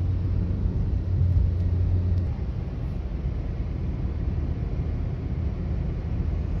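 Car driving on a country road, heard from inside the cabin: a steady low engine and road rumble. The low hum eases a little about two seconds in.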